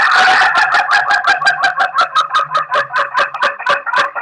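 A white rooster crowing one very long, drawn-out crow. The crow wavers in a rapid, even warble of about six pulses a second.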